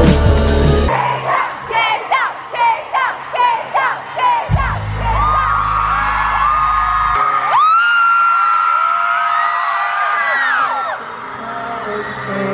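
Live concert music heard from within the crowd. A full band sound cuts off about a second in. It gives way to a sparser song with singing, a low bass note in the middle and long held notes near the end.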